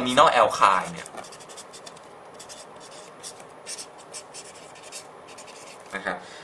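Marker pen writing on paper: a run of short, irregular scratching strokes as words are written out.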